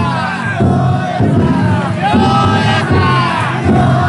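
Large group of festival float bearers chanting together in loud shouted calls, one about every second, each call bending up and down in pitch, over the dense noise of a packed crowd.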